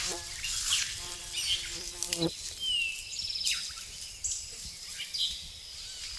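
A flying insect buzzing close by for about two seconds, one steady pitch that cuts off suddenly. Short high bird calls follow, over a constant rustle of grass.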